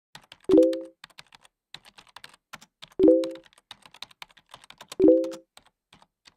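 Keyboard typing: a run of quick, irregular key clicks, with three heavier key thuds, each ringing briefly, about half a second, three seconds and five seconds in.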